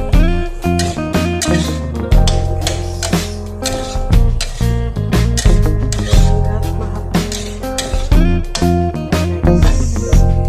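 Background music with plucked guitar over a steady bass line.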